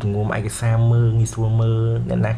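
A man's low voice speaking in long, drawn-out syllables held on a steady pitch.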